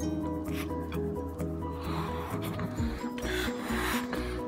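A rubber balloon being blown up by mouth: two breathy puffs of air into it in the second half, over background music.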